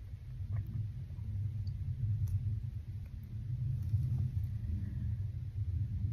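A steady low rumble, with a few faint, short clicks scattered through it.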